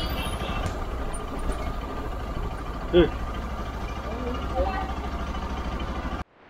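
A motorbike engine running steadily at low speed, with road and wind noise, heard from a camera riding on the bike. There is one short loud voice about halfway through and fainter voices near the end.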